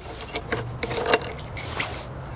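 Light metallic taps and clinks of a steel tool working against the large steel nut on a CVT variator shaft, chipping the nut to split it off.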